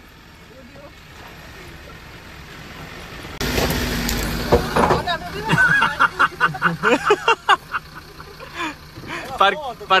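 Land Rover Defender engine running as it drives through a shallow rocky stream, faint at first and slowly growing louder. Then, suddenly louder and closer, an idling off-road vehicle engine hums steadily under people talking and laughing.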